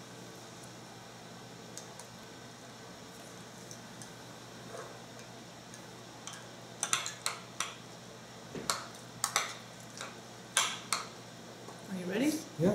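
Metal spoons clinking against ceramic bowl and mug during stirring and scooping: a quiet first half, then a quick, irregular run of sharp clinks in the second half.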